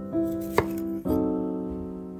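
A kitchen knife slicing through a broccoli stem with a crisp crunch, ending in a single knock of the blade on the wooden cutting board about half a second in. Soft piano music plays throughout.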